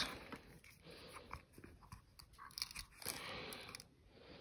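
Faint clicks and rustling as a small cardboard jewellery box is handled and its lid opened, with a slightly louder rustle about three seconds in.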